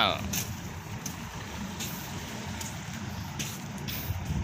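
Steady low rumble of wind and sea water around the open deck of a barge under tow by a tug.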